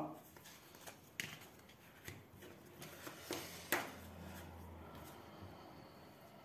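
Tarot cards being slid apart by hand across a tabletop: faint soft scrapes with a handful of light taps and clicks.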